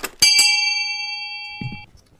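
A small bell struck once, like a shop door bell, ringing and fading for about a second and a half before cutting off suddenly. It marks the office door opening as visitors come in.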